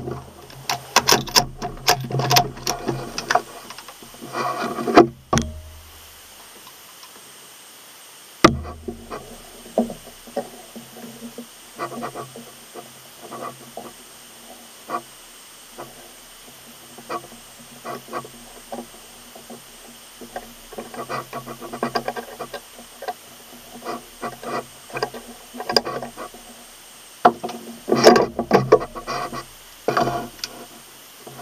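Birds chirping in scattered short bursts, busiest near the start and again toward the end. There are a few sharp knocks, and the sound cuts off abruptly twice, about five and eight seconds in.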